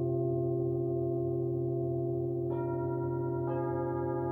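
Metal singing bowls struck with a mallet and left to ring, their steady overlapping tones sustaining. Two new strikes about two and a half and three and a half seconds in add fresh, brighter tones on top of those already ringing.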